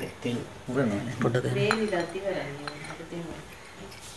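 A man's voice, low and not clearly worded, for about three seconds, with a few light clinks among it.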